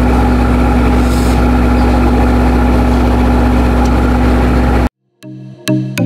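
Boat engine idling with a steady low hum that cuts off abruptly about five seconds in; after a brief gap, electronic music with a beat starts.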